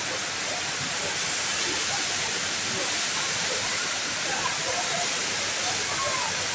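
Jewel's Rain Vortex, a tall indoor waterfall falling through a glass dome, pouring in a steady, unbroken rush of water. Faint crowd voices sound underneath.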